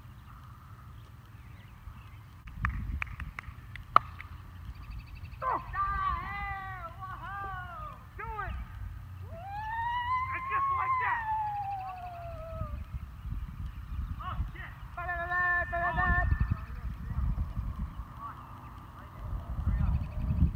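Wind rumbling on the microphone, with a sharp crack about four seconds in and a few fainter clicks just before it. High-pitched yells or calls come in three bursts: around six to eight seconds, a long falling cry around ten to twelve seconds, and a shorter burst around fifteen seconds.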